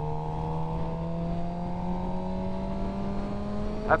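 Sportbike engine running under a steady light pull, its pitch rising slowly and evenly as the bike gathers speed.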